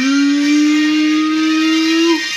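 A single loud note held at one steady pitch for about two seconds, then cut off, as a musical reveal sting.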